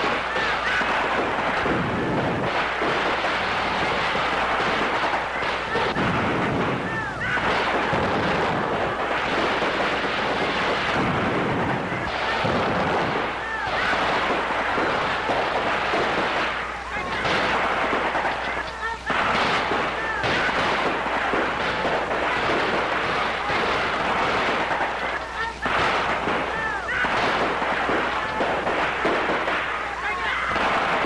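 Battle sound on an old film soundtrack: dense, unbroken gunfire mixed with explosions, with no let-up.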